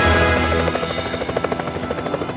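Helicopter rotor chop coming in under orchestral music about two-thirds of a second in: a fast, even beat of blade thuds while the held notes of the music thin out.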